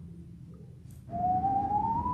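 A man whistling one long rising note into a microphone, starting about a second in and climbing steadily in pitch: a sound effect for objects rising up through water.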